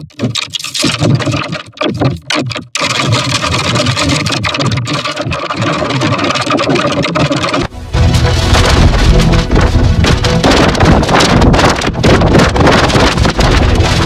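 Logo music and sound effects heavily distorted by editing effects. The sound stutters with short dropouts in the first few seconds, then cuts abruptly about halfway through to a louder, bass-heavy stretch.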